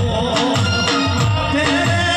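A man singing a folk song into a microphone, amplified, over a steady drum beat of about three strokes a second.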